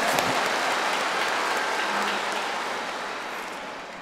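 A large congregation applauding, the clapping dying away gradually toward the end.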